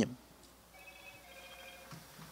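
A faint electronic tone, several steady pitches sounding together for about a second, starting near a second in.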